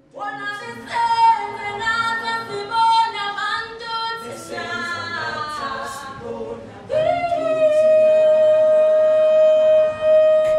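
A woman singing a cappella: a flowing melodic line, then one long high note held from about seven seconds in.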